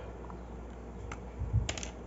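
A few light plastic clicks and a soft low knock, about a second and a half in, from a marker pen being handled and set down on a table.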